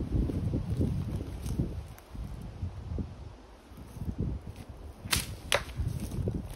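Golf club swung at a ball from under low pine branches: two sharp swishes about five seconds in, half a second apart, as the club whips through the foliage and strikes the ball. Wind rumbles on the microphone throughout.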